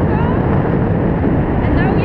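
Steady rush of airflow buffeting an action camera's microphone during paraglider flight, with short, high gliding chirps sounding over it.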